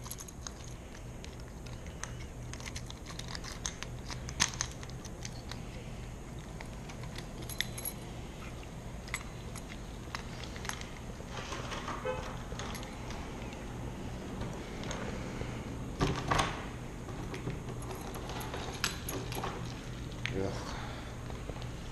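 Cheap residential doorknob being forced and turned under stress, its latch and metal parts clicking and rattling now and then, the loudest clatter about sixteen seconds in.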